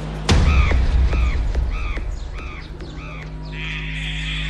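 Electronic trance track: a deep boom hits about a third of a second in, then five quick caw-like calls repeat over a held bass note, and a hissing riser starts building near the end.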